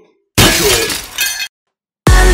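Glass-shattering sound effect: a single burst of breaking glass about a second long that cuts off abruptly.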